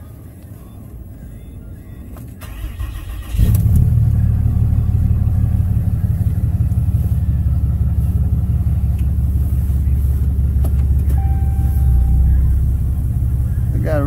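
Ram 2500's 6.7L Cummins turbodiesel, tuned and emissions-deleted, starting after the pre-heat wait. The starter cranks briefly about two and a half seconds in, the engine fires about three and a half seconds in, and it then idles with a steady low rumble.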